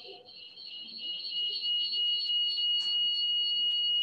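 A steady, high-pitched ringing tone with two pitches together, swelling over the first second or so and then holding.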